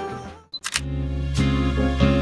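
Background music changing tracks: a hip-hop/R&B song fades out, two quick clicks sound, and a gentle guitar-led track begins.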